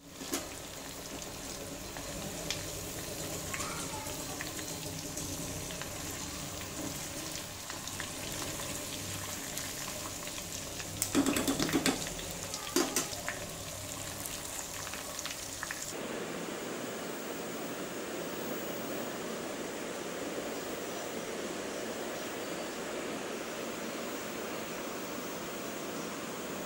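Chicken pieces deep-frying in a pan of hot oil, a steady sizzling hiss. There is a brief run of louder clatters around 11 to 13 seconds in. About two-thirds of the way through, the sound turns to a duller, lower hiss.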